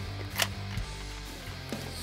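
A screwdriver bit on a computer card's bracket screw gives a sharp click about half a second in and a fainter one shortly after. The bit may be too thin for the screw head. Background music with steady low notes plays underneath.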